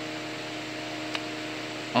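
Steady machine hum with a few level tones, and a faint click just past a second in.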